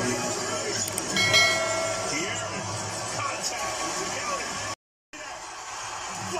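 Basketball game broadcast sound played through a TV speaker: arena noise and murmured commentary, with a short high squeak about a second in. The sound cuts out for a moment near the end, at a cut between highlight clips.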